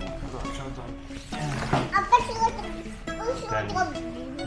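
Background music with steady held tones, and a young child's voice vocalizing over it without clear words, about a second in and again near the end.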